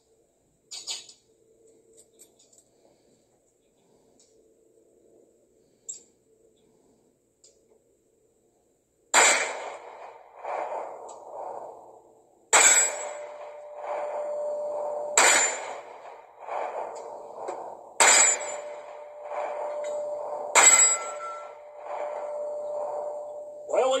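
Five 9mm pistol shots from a Ruger Max 9 Pro, the first about nine seconds in and the rest about three seconds apart, each with a ringing tail. The pistol fires 115-grain flat-nose full metal jacket rounds and cycles each one without a malfunction.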